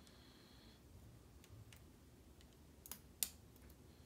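Faint, sparse metallic clicks of a hook pick and tension bar working the pins inside a Brinks padlock, with two sharper clicks about three seconds in.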